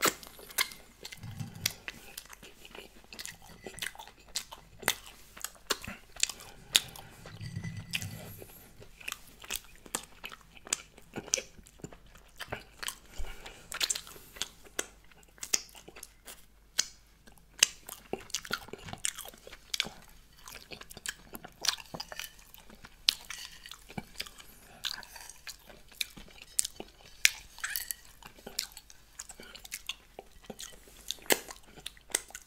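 Close-miked ASMR mouth sounds of fingers being licked: wet lip and tongue smacks in a rapid, irregular run of sharp clicks.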